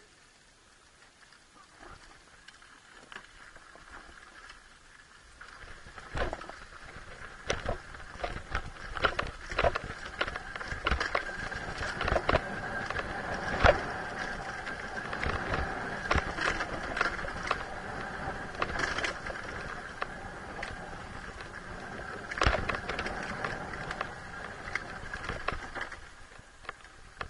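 Dirt bike riding down a rough dirt trail: the engine runs at a steady low note while the bike knocks and rattles over the ground. It is quiet for the first few seconds, and from about six seconds in the knocks come thick and fast.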